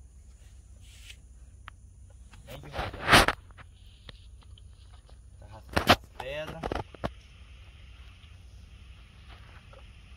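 A man's voice in two brief loud bursts, about three seconds in and again about six seconds in, over a steady low rumble.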